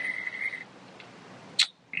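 A steady high-pitched whine over a faint hiss, fading out about half a second in, with a brief hiss near the end.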